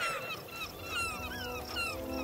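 Bird calling in a quick run of short falling chirps, a few a second, over faint background music.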